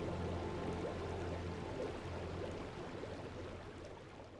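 Marquis hot tub jets running, churning and bubbling the water in a steady rush that gradually fades out.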